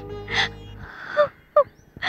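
A woman crying: a few short, catching sobs and gasps, while background music fades out in the first second.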